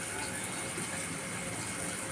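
Eggplant bharit sizzling in a frying pan on the stove, a steady hiss of frying.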